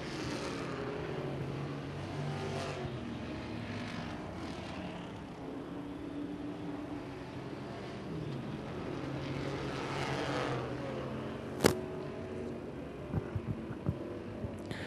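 Several classic-class dirt track race cars running laps around a dirt oval, their engines rising and falling in pitch as they pass through the turns and down the straights. A single sharp click comes about two-thirds of the way through.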